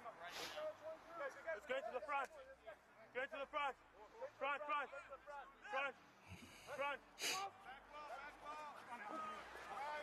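Faint shouted calls from rugby players on the pitch, many short calls one after another. A single sharp knock comes about seven seconds in.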